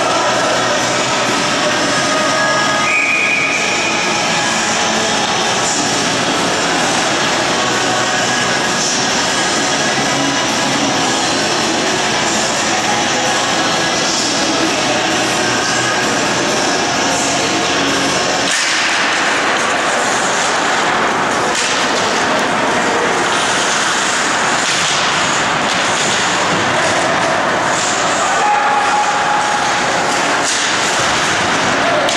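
Steady, loud ice-rink ambience with music faintly over it during a stoppage. The sound changes about two-thirds of the way through, as the puck is dropped and play resumes, into the noisier scrape and clatter of skates and sticks on the ice.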